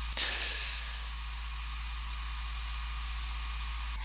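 Steady hiss with a low hum underneath: the background noise of a voice-over recording, a little louder in the first second and then even.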